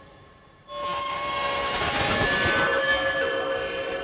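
A drone track played back through the Output Portal granular effect: after a fading tail, a noisy texture with a few held tones comes in sharply less than a second in and then slowly dies away near the end. The effect's XY point is being moved as it plays, shifting the texture.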